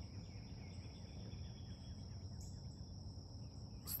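Faint, steady high-pitched insect chorus, with a low background rumble beneath it.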